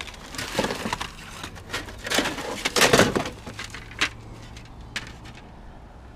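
Junk being rummaged through by hand in a dumpster: cardboard boxes and loose objects rustle, scrape and clatter in irregular bursts. The busiest stretch is around two to three seconds in, followed by a few single sharp clicks.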